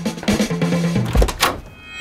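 Background music with a beat, broken a little over a second in by a low thump and a loud rising whoosh, a transition sound effect.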